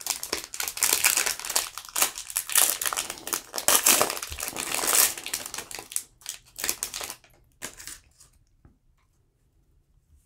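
Foil wrapper of a Panini Complete basketball card pack crinkling and being torn open by hand. Dense crackling for about seven seconds, then a few faint rustles as the cards come out.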